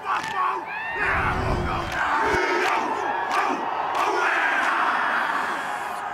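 Rugby team performing a haka: many men chanting and shouting in unison, with several sharp slaps, over a large stadium crowd.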